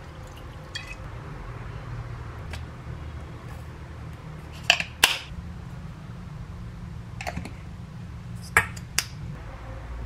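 Kitchen clatter: a few sharp clinks and taps of kitchenware, a close pair around the middle and another near the end, over a low steady hum.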